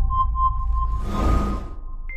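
News-channel intro music under a countdown animation: a low rumbling bed with a quick run of short, evenly spaced sonar-like beeps in the first second, then a whoosh that swells and fades.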